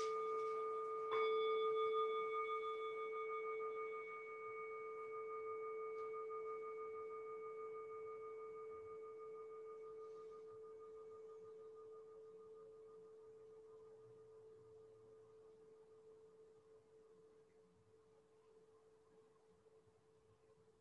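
A bowl bell struck twice, the second strike about a second in, its bright ringing tone with higher overtones dying away slowly until it has almost faded out by the end. The bell marks the start of a period of silent meditation.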